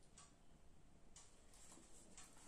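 Near silence: faint room tone with a few soft ticks, about one a second.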